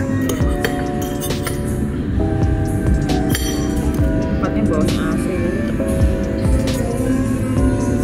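Background music with held notes that change every second or few, over sharp clinks of a metal fork and knife against a plate as meat is cut.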